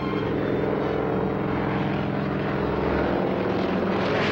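Propeller aeroplane engine droning steadily and loudly, with a rushing hiss over it.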